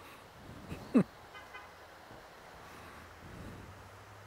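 One loud, very short falling squeal or whistle about a second in, sweeping from high to low pitch in a fraction of a second, over a faint steady hiss from the shallow creek.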